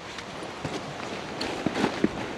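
Quick footsteps crunching on gravel and packed dirt, landing irregularly several times a second.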